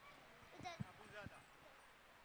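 Near silence, with faint distant voices twice, about half a second and a second in.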